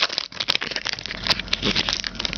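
Wrapper of a trading-card pack crinkling and crackling as it is torn open and handled, a quick irregular run of small sharp crackles.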